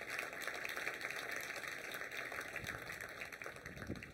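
Audience applauding steadily, the clapping dying away abruptly right at the end.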